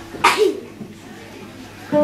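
A single sharp sneeze about a quarter second in. Plucked acoustic guitar notes start again just before the end.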